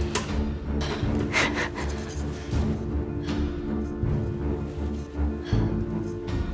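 Tense film score: low sustained tones over a low, pulsing drum-like throb, with a few brief noises rising above it.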